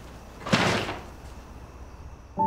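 A paper grocery bag set down on a counter about half a second in: one brief thud with a crackle of paper.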